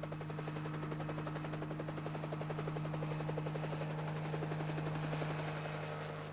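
Small crop-spraying helicopter, fitted with spray booms, running close by: a rapid, even rotor beat over a steady engine hum.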